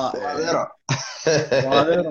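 A man speaking, in two phrases with a short break between them.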